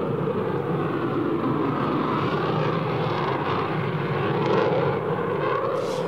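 Eurofighter Typhoon's twin EJ200 turbofan engines running on afterburner as the jet climbs away, a steady, even rushing noise.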